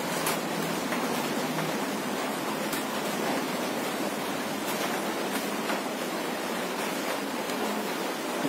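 Steady, even hiss of room background noise, with no clear single event.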